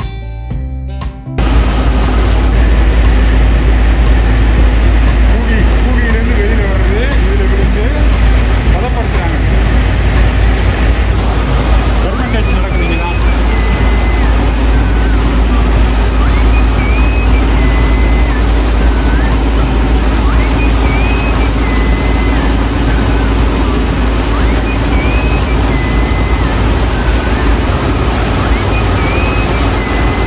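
Tea factory machinery running: a loud, steady rumble and hum with a strong deep low end, cutting in about a second and a half in after a moment of background music. In the second half, faint short high-pitched chirps recur about every four seconds over the machine noise.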